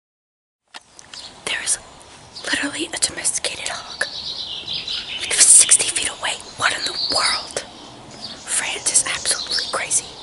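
Birds chirping and calling, with short rising and falling chirps, under a woman's quiet, breathy speech. The sound begins after a brief silence.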